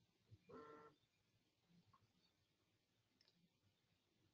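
Near silence, with one brief faint tone about half a second in.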